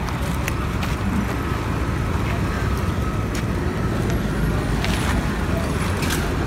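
Steady low outdoor rumble, with a few faint clicks scattered through it.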